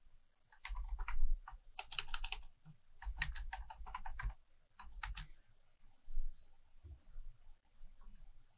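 Typing on a computer keyboard: several quick runs of keystrokes with short pauses between them, dying away to a few scattered taps after about five seconds.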